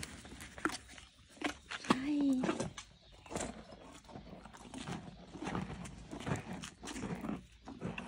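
A horse breathing and snuffling right at the microphone, with short clicks and rustles from its muzzle and mouth. A woman hums a short "mhm" about two seconds in.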